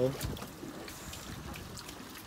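Water trickling and lapping around a boat on a calm sea, with a few faint knocks.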